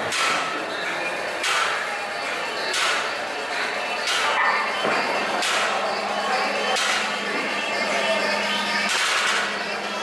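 Gym ambience: background music and indistinct voices in a large room, with a soft knock about every one and a half seconds.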